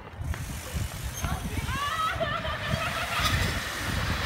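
Distant voices calling out in drawn-out, wavering tones over a steady low rumble.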